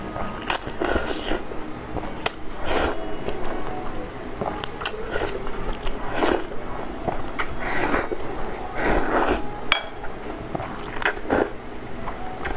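Close-miked mouth sounds of someone eating noodles in a wet chili sauce: wet slurps every second or two, with chewing between them.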